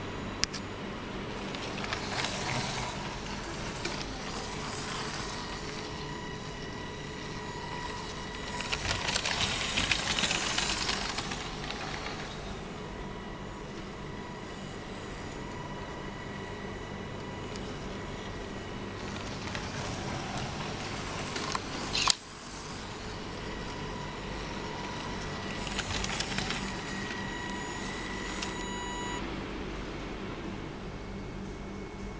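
Small electric motor of a Lego model train running: a steady hum with a faint high whine that comes and goes, a rushing noise that swells for a few seconds about a third of the way in and again near the end, and one sharp click about three quarters of the way through.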